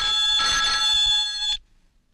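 Old-fashioned ornate desk telephone's bell ringing steadily for about a second and a half, then cutting off suddenly as the call is picked up.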